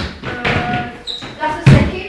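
Voices talking, with one loud thump near the end.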